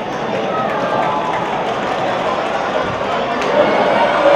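Football stadium ambience: a small crowd chattering and calling out over the live match, with scattered voices rising to louder shouts near the end as the shot is taken.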